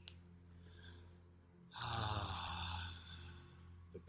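A man's long, voiced sigh, an audible exhale of about a second, starting about two seconds in, over a faint steady hum.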